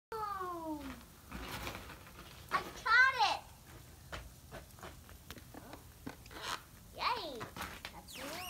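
Young children giving wordless high-pitched squeals and cries with sliding pitch, three times: a falling cry at the start, the loudest rising-and-falling squeal about three seconds in, and another falling cry near the end. Faint scattered ticks are heard in between.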